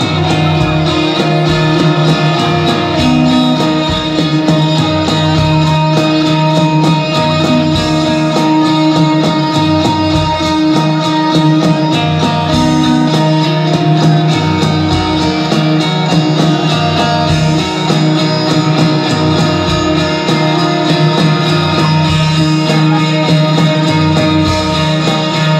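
Live rock band playing: two electric guitars ringing out held, droning notes over a steady kick-drum beat, recorded from the audience.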